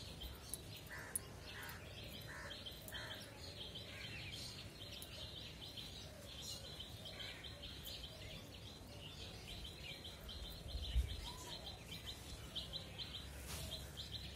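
Faint outdoor ambience of birds chirping: a rapid run of short high chirps throughout, with a short series of four lower calls in the first few seconds. A soft low thump about eleven seconds in.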